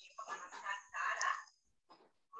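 A rooster crowing faintly: one crow of about a second and a quarter, broken into three parts.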